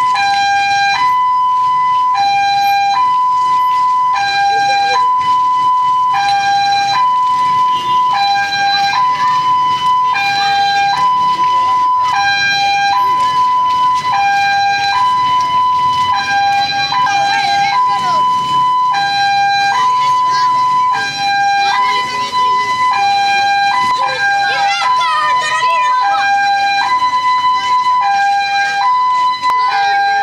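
Two-tone hi-lo siren, a lower and a higher note alternating about once a second without a break, with crowd voices beneath it.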